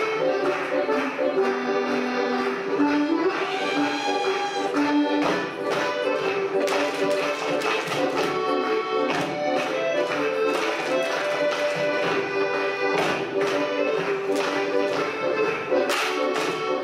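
Accordion-led traditional German folk dance music playing, with many sharp taps and claps from the dancers, thickest in the second half.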